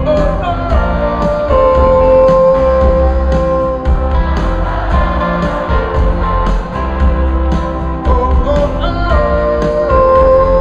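Live band playing a pop-rock song: electric guitar over bass and drums, with long held notes that step down in pitch near the start and again near the end.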